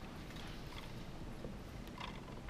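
Faint scattered taps and handling sounds of hands and a pen on paper on a desk, over a low steady room hum.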